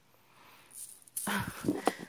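Red tissue paper in a cardboard box rustling, with a few light clicks, as a plastic tube of chocolate candy is set down on it. The rustle starts faintly and grows louder about a second in.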